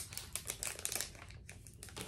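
Earring packaging crinkling with light clicking as earrings and their backs are handled, a quick run of small ticks that thins out after about a second.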